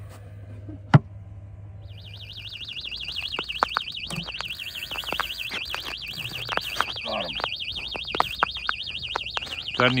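Electronic bite alarm of an automatic ice-fishing rig box sounding, a high, rapidly warbling tone that starts about two seconds in and keeps going: the signal that a fish has taken the line. Scattered clicks and knocks go with it, and there is one sharp click about a second in.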